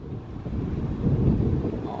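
Wind buffeting the microphone: a ragged, gusty low rumble.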